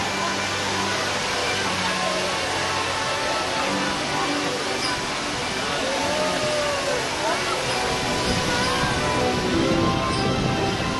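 Busy amusement-ride ambience: crowd chatter and voices over fairground band-organ music. Rumble and wind noise build in the last couple of seconds as the flying-elephant ride gets moving.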